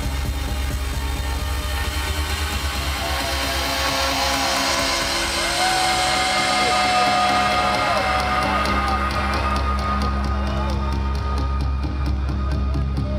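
Trance dance music played loud over a club sound system in a live DJ set, with steady heavy bass. A long held synth melody note with bends runs through the middle, and the treble fades away near the end.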